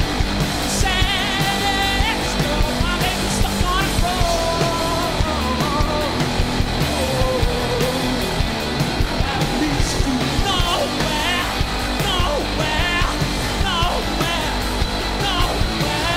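Live indie rock band playing: electric guitars, bass and drums with a steady beat, and a man singing over them.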